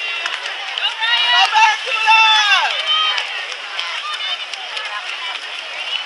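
Poolside spectators shouting encouragement in high-pitched voices, with long falling calls loudest from about one to three seconds in, over steady crowd noise.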